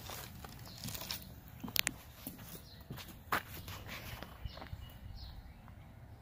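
Faint footsteps with a few short sharp clicks and scuffs, two of them close together about two seconds in.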